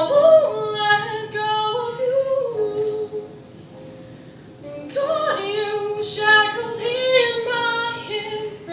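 A girl singing a solo into a handheld microphone, amplified in a hall, with sustained notes that bend in pitch. Her voice drops away for about two seconds in the middle and then comes back in.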